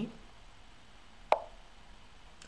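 Lichess move sound: a single short, sharp wooden click of a piece landing on the board, about a second and a half in, as the opponent's move arrives.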